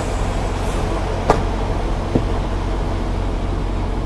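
Semi-truck diesel engine idling, a steady low drone heard inside the cab. There are two short clicks, about a second in and about two seconds in.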